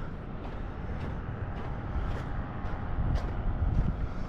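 Wind rumbling on the camera microphone, with footsteps on sand about twice a second as he walks.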